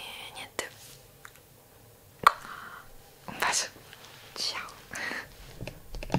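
A woman whispering a few short phrases close to the microphone, with a sharp click about two seconds in.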